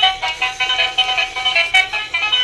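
Electric toy duck playing its built-in electronic tune through its small speaker as it rolls: a quick run of high notes with no bass.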